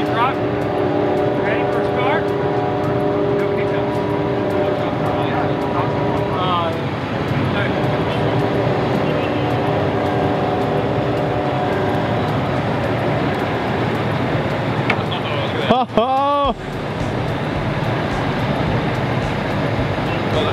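Tow truck winch and engine running steadily while the winch cable hauls a submerged car up from the riverbed, with a steady whine that stops for a couple of seconds partway through and then comes back. A short swooping tone sounds near the end.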